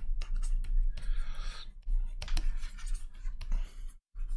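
Stylus scratching across a graphics tablet surface in quick, irregular brush strokes.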